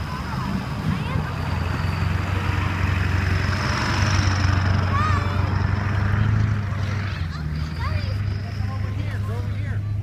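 Distant children's shouts and calls from several directions, short and scattered, over a steady low rumble.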